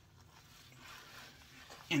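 Hands rubbing over the face and beard: a soft brushing noise that builds to its loudest about a second in, then ebbs.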